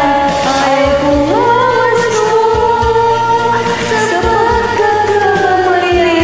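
Women singing a karaoke duet over a recorded backing track. The vocal line is slow and melodic with long held notes, over a bass line and a light beat.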